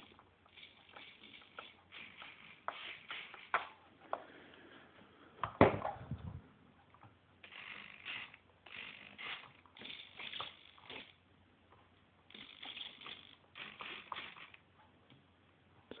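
Intermittent rustling and handling noise close to the microphone, with a single sharp knock about five and a half seconds in.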